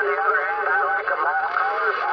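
A man's voice coming over the speaker of a Uniden Bearcat 980SSB CB radio, received on lower sideband on channel 38 (27.385 MHz). It sounds thin and narrow, with no low end and a steady hiss of band noise behind it.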